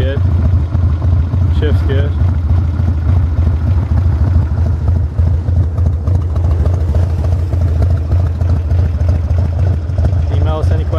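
1992 Harley-Davidson Dyna Glide's 1340 cc Evolution V-twin idling steadily.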